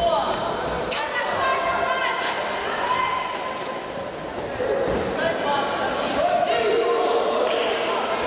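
Shouting voices echoing in a large sports hall, with scattered sharp thuds from boxing gloves and feet on the ring canvas.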